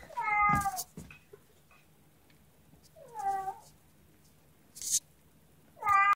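A kitten meowing: a short meow near the start that falls slightly in pitch, a second about three seconds in, and a third beginning at the very end. A brief rustle comes just before the last meow.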